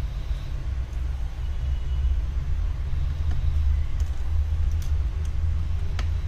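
A steady low rumble with no words over it, and a few faint light clicks about four to five seconds in from small screws and a precision screwdriver being handled on the bench.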